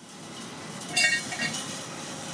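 Steady construction-site noise fading in, with a sharp metallic clank about a second in that rings briefly, and a lighter clink just after, as of metal striking metal.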